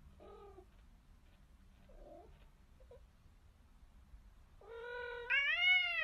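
Domestic cat meowing: a few faint short meows, then one loud, drawn-out meow from about four and a half seconds in that climbs in pitch and falls away at the end.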